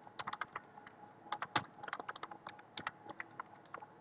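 Computer keyboard being typed on: quiet, irregular runs of key clicks as a line of code is entered.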